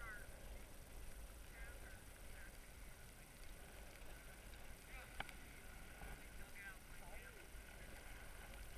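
Faint distant voices, a few short snatches now and then, over a low steady rumble, with one light click about five seconds in.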